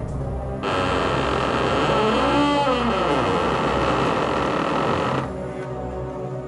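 A loud rushing swell, a film sound effect, laid over eerie background music as the chest is opened. It comes in about half a second in, holds, and cuts off suddenly about five seconds in, with a rising-and-falling sweep in the middle.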